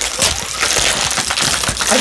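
Two plastic blind-bag packets crinkling and rustling as they are squeezed and torn open by hand, a dense run of irregular crackles.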